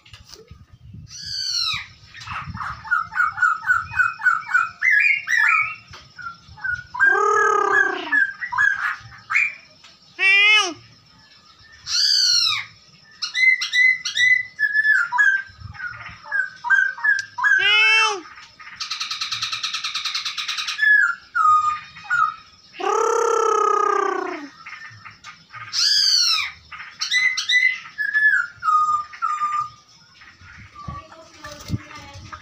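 A caged poksay hongkong (black-throated laughingthrush) singing loudly and without pause: a varied run of whistled phrases. It mixes loud downward-sweeping whistles with quick runs of short notes and one harsh buzzing note about two-thirds of the way through.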